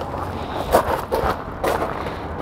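Light knocks and rustles from a motorhome's hinged exterior storage compartment door being swung up and open, over a low steady hum.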